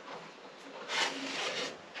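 A brief rubbing rustle, about a second in, of hands working fishing line and a line clip.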